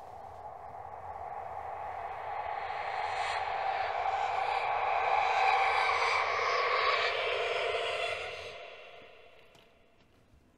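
A film sound-effect swell: a rushing, noisy rise that builds over several seconds, holds loud for a few seconds, then dies away quickly near the end.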